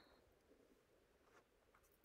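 Near silence: room tone, with a few faint small ticks.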